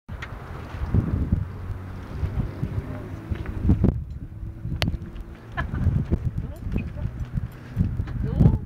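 Indistinct, muffled voices over an uneven low rumble on the microphone, with a single sharp click a little past the middle.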